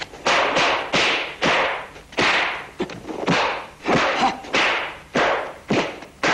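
Kung fu film punch and block sound effects: a rapid series of about a dozen sharp hits, roughly two a second, each fading quickly.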